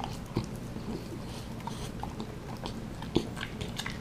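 French bulldog biting and chewing a raw meat patty off a plate, a run of small irregular clicks and smacks with a sharper click about three seconds in.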